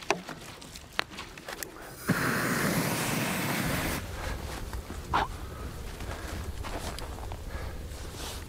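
Petrol splashing out of a plastic jerry can onto an ice-covered car as a loud hiss for about two seconds, after a few sharp clicks. Then the petrol burns on the car with a low, steady rumble and a few crackles.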